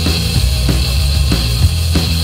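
Hardcore punk played by a bass-and-drums duo: bass guitar holding low notes under a drum kit hitting in an even, driving beat of about three strokes a second, with no vocals.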